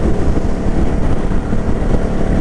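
Yamaha Drag Star 650's 649 cc V-twin engine and exhaust running steadily at highway cruising speed, a loud, even low drone heard from the rider's seat.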